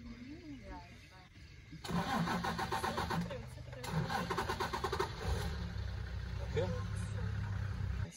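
A vehicle engine being started: the starter cranks in two bouts, the second about two seconds in, then the engine catches and runs at a steady low idle.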